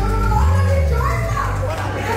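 The last chord of a live gospel hymn ending, a low electric bass note held and then cut off about a second and a half in, while people's voices start talking over it.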